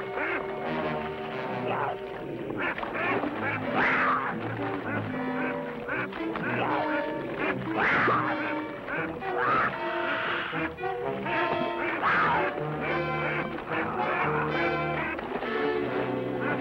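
A Canada goose honking repeatedly in distress as it thrashes in the water, its calls coming every second or two. Background music with long held notes plays under it.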